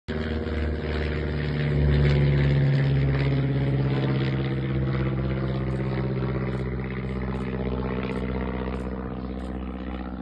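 A motor engine running steadily, a low hum that holds one pitch and eases slightly in loudness.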